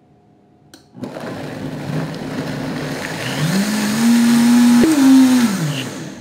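High-powered countertop blender starting about a second in and puréeing chopped rhubarb in a liquid sauce base until fine. Its motor pitch rises as it speeds up, steps higher once, then winds down near the end.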